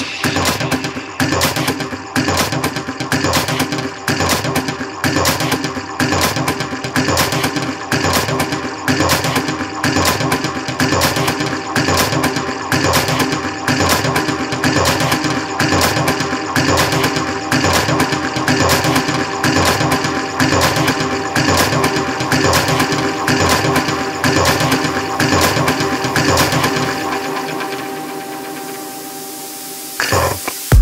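Melodic techno in a breakdown with the kick drum dropped out: held synth tones over a rapid, even synth pulse. Over the last few seconds the pulse fades and a hissing noise riser swells, building back toward the drop.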